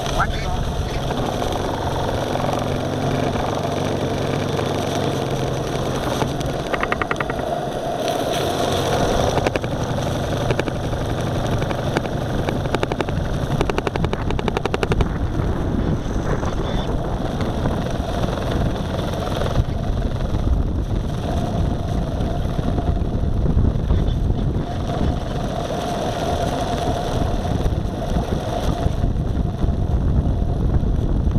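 Live steam model boat under way: its small steam engine runs with a fast, even beat, mixed with water washing along the hull.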